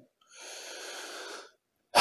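A man's audible breath into a close microphone, one smooth hiss about a second long.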